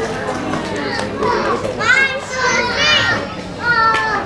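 Young children's voices calling out and chattering over one another, with several high-pitched shouts in the second half.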